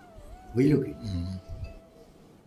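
A man's voice: a short, drawn-out, wordless utterance with a wavering pitch, starting about half a second in and lasting under a second.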